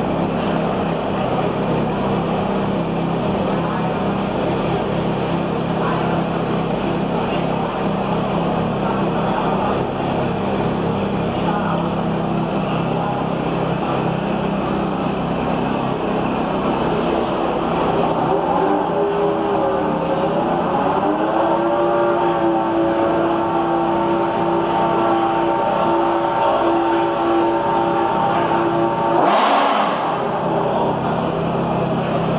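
Ferrari F430 with Novitec Rosso tuning, its V8 idling with a steady low note. About eighteen seconds in, a higher engine tone glides up and holds steady for several seconds, then breaks off suddenly near the end.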